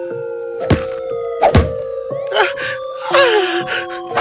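Suspenseful film-score music of long held tones, cut through by sharp impact hits: one about 0.7 seconds in and a louder one, falling in pitch, about a second and a half in, with more bursts near the end.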